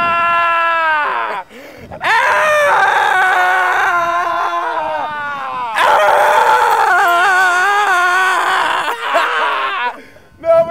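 A man yelling at the top of his voice in long, drawn-out howling cries: one ends about a second in, then two more of several seconds each follow, the last wavering up and down in pitch.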